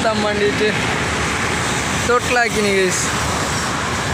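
Steady road traffic noise, with a man's voice coming in twice in short bursts.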